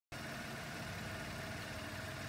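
2017 Mitsubishi Mirage G4's three-cylinder engine idling steadily.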